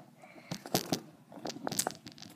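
Handling noise from a cardboard coin folder and the camera being moved: a quick string of sharp clicks, taps and crinkling rustles starting about half a second in.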